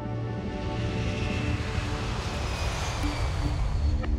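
Lockheed SR-71 Blackbird's Pratt & Whitney J58 jet engines in full afterburner on the takeoff run, a broad jet roar that swells within the first second and stays loud, over background music.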